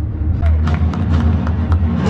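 Audio of a live outdoor stage show: scattered sharp knocks over a steady low rumble, starting about half a second in.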